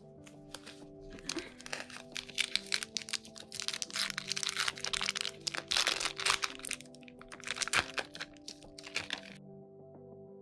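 Foil wrapper of a Yu-Gi-Oh trading-card booster pack crinkling and crackling as it is handled and torn open, with the cards slid out, in many quick crackles that stop about half a second before the end. Background music plays underneath.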